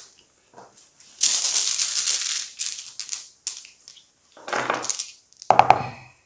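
Zombie Dice dice rattling as they are shaken in cupped hands for about a second and a half, then a few sharp clacks near the end as they are tossed onto the dice tray.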